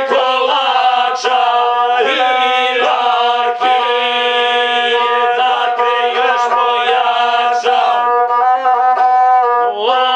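Gusle, the single-string bowed Serbian folk fiddle, played alongside singing of a folk song in long, drawn-out, ornamented notes.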